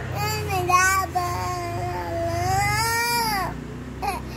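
A young girl singing in long, drawn-out high notes; her voice climbs and then falls away, stopping about three and a half seconds in.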